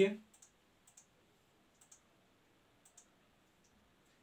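A few faint, sharp clicks, spaced about a second apart, over quiet room tone.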